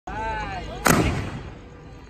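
A 3-inch pre-loaded firework shell launching from its mortar tube: one sharp bang about a second in, its lift charge firing, with a short echoing tail.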